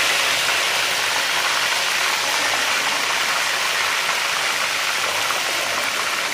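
Whole snapper frying in a deep pan of hot oil, a steady sizzle.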